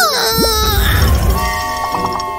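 Cartoon sound effects over background music: a loud wailing cry that falls steeply in pitch at the start, then a quick rising glide, followed by steady held music notes.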